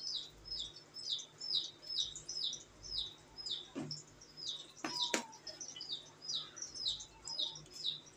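A small bird chirping over and over in short, high, falling chirps, about three a second. A couple of sharp clicks come around the middle.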